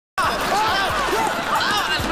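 Several people crying out in alarm at once, with a few low thumps in the first second.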